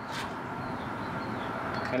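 Steady hiss of a Blackstone propane griddle's burners running, with one brief shake of a seasoning shaker just after the start.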